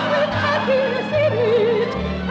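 A woman singing long held notes with a wide vibrato over an instrumental accompaniment.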